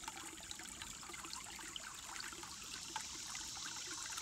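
Shallow creek trickling and gurgling over mossy rocks, a steady stream of small bubbling pops as the water runs under and between the stones.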